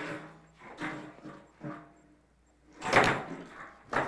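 A man's short wordless vocal noises, then a loud bang about three seconds in and another knock at the end.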